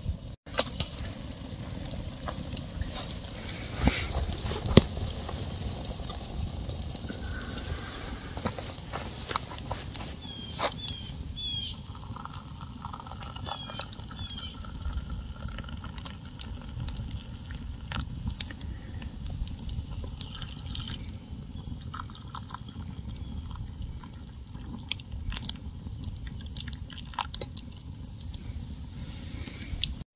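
Wood campfire crackling with scattered sharp pops, while hot water is poured from a kettle into wooden cups for about the middle half. A few brief high bird chirps about ten to fourteen seconds in.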